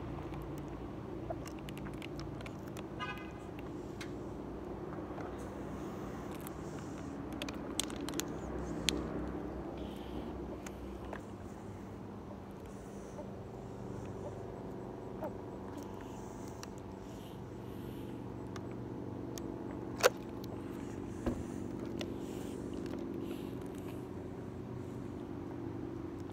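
A motorbike engine running steadily, with a few sharp clicks over it, the sharpest about twenty seconds in.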